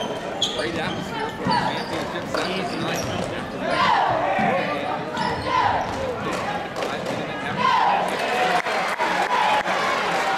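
Basketball dribbled on a hardwood gym floor, its bounces ringing in a large hall, over the voices of a crowd. Sneakers squeak on the court, the loudest squeaks about four and eight seconds in.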